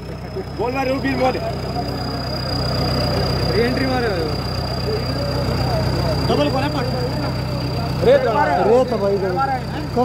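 Farmtrac 6055 tractor's diesel engine running steadily at idle, with onlookers' voices over it.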